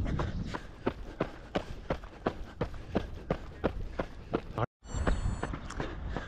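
A runner's footfalls on a paved path at a steady marathon-pace stride, about three steps a second, over a low wind rumble on the microphone. The sound cuts out for an instant about three-quarters of the way through.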